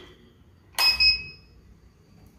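Two sharp clinks in quick succession with a brief high ringing tone as mains power is connected to the homemade Arduino napkin dispenser at the wall socket, switching it on.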